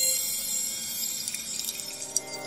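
Shimmering, high-pitched sparkle sound effect: many held chime-like tones glittering together, slowly thinning.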